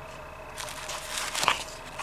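Bubble wrap and packing being handled, crinkling and crackling, starting about half a second in, with one sharper crackle about a second and a half in.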